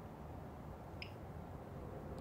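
Quiet room tone with a faint hum, and one small short click about a second in.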